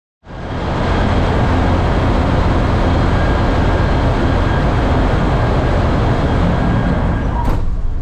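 Steady loud shipboard machinery and ventilation noise: a deep rumble with a hiss over it. A sharp click comes near the end, after which the hiss drops.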